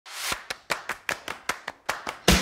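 Logo animation sound effect: a short swelling whoosh, then a steady run of sharp percussive hits, about five a second.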